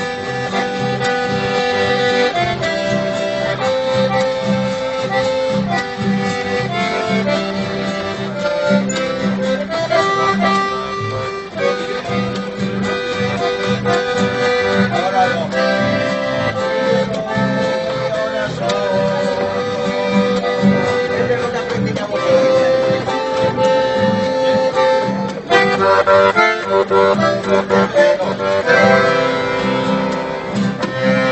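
A chamamé played live on accordion and acoustic guitar: the accordion carries the melody in held, changing notes while the guitar strums the rhythm underneath.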